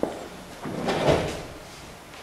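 Handling noise: a sharp click, then about a second in a brief rustle with a dull thump.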